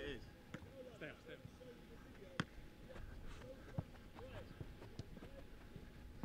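Footballs being struck during goalkeeper drills: sharp thuds, the two clearest about two and a half and four seconds in, with lighter knocks between, over faint distant voices.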